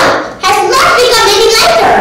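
A child's voice speaking, telling a story, in an animated delivery.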